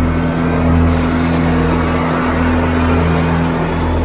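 Suspense film-score music: a loud, low sustained drone of steady held tones.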